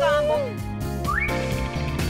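Cartoon-style whistle sound effects over background music: a held whistle tone that bends downward and fades just after the start, then a quick rising whistle about a second in that holds at the top.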